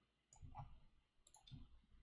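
Near silence broken by a few faint, scattered clicks from a computer mouse and keyboard in use.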